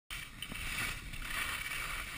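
Skis sliding over snow with a steady scraping hiss, and wind rumbling on the microphone.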